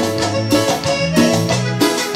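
A Latin dance band playing live, with electric bass, keyboard and percussion over a steady beat.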